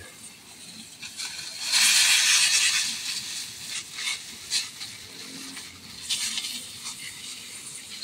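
Water from a hose sprayer hissing and splashing onto plastic trays of plants and moss. The hiss grows louder for about a second, a little under two seconds in.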